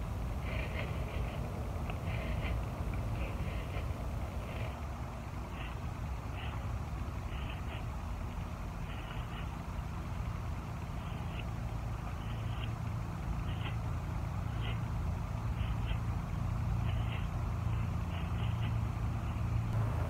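Manual dethatching rake pulled through the lawn in repeated short strokes, its tines scratching up the dead thatch layer about once a second. Under it runs a steady low vehicle rumble that grows a little louder in the second half.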